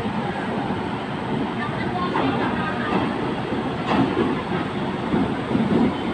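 A train headed by a WAP-7 electric locomotive rolls slowly into the station with a steady rumble. There are a couple of short clanks, about two and four seconds in.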